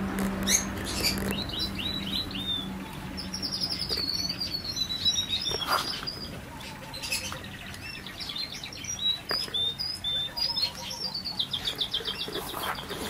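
Aviary birds chirping and twittering: many quick high chirps and short rapid runs of notes throughout, with a few brief knocks.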